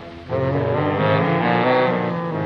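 Dance band holding a long chord after the last sung line, several notes sounding together at once.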